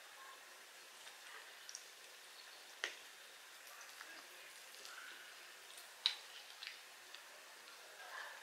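Faint mouth sounds of chewing crispy fried chicken wing, with a few short, sharp crackles of the crust, the clearest about three seconds in and again about six seconds in.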